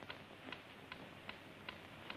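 A clock ticking faintly and evenly, about two and a half ticks a second, over a low hiss.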